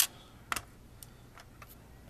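Die-cast model stock car being handled, turned over and set down on a tabletop. There is a sharp click at the start, a knock about half a second later, then a few faint ticks.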